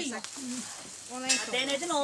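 Women's voices talking quietly in the background, with a soft hiss between the words.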